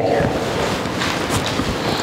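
Rushing, rustling noise on the microphone with no voice in it, nearly as loud as the speech around it: a hand or clothing rubbing against the mic.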